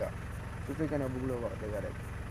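A man's voice speaking briefly, a little under a second in and stopping near the end, over a steady low rumble.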